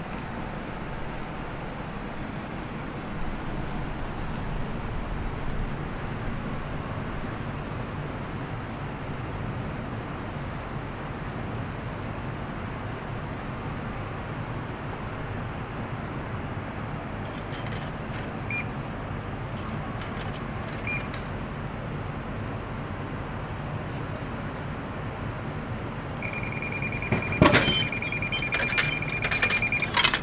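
Steady low rumble of city street traffic. Near the end a high electronic alarm tone sounds steadily for about four seconds, with a sharp click partway through it.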